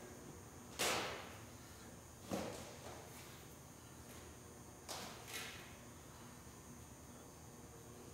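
Four sharp metallic knocks, each ringing briefly, from a threaded camshaft-bearing puller being worked with a wrench in a cast-iron tractor engine block as it drives out the cam bearings. The first comes about a second in, the last two close together about halfway through.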